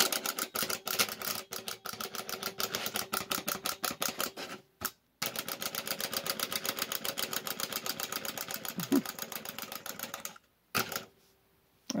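Small plastic wind-up hopping eyeball toy running on its clockwork spring: a rapid, even ticking of hops on a hard surface over a faint steady whir. The run breaks off briefly near the middle and winds down to a stop about ten seconds in.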